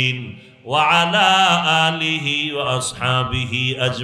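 A man chanting an Arabic supplication (dua) in a drawn-out, wavering melody, with a short pause for breath about half a second in.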